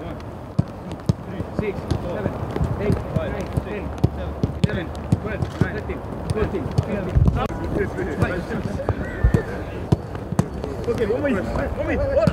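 Footballs being kicked on a grass training pitch: sharp thuds at irregular intervals, over indistinct players' voices calling out.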